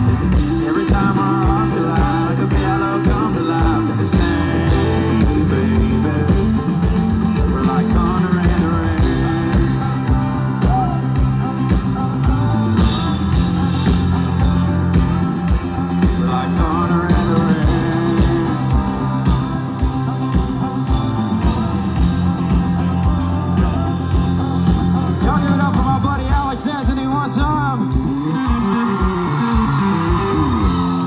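Live rock-style band playing an instrumental stretch: electric guitar over bass and a steady drum beat.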